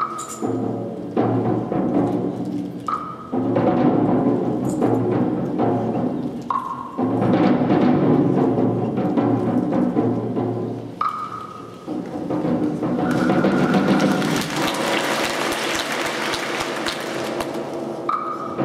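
Contemporary chamber ensemble of clarinet, percussion, piano, violin and cello playing. Four times a short high note sounds and gives way to dense, percussion-heavy passages. In the last five seconds a bright hissing wash joins in over them.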